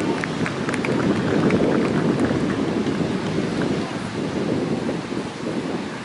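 Wind buffeting the camera microphone: an uneven, gusting noise that swells and fades, with a few light ticks in the first couple of seconds.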